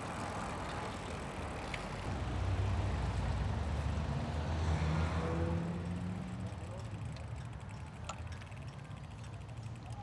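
A car driving close alongside, its engine and tyre noise swelling about two seconds in and fading after about six seconds, over steady street traffic noise.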